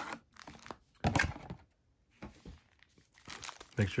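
Foil trading-card packs crinkling and rustling as they are slid out of a cardboard blaster box, in a few short bursts with the loudest about a second in.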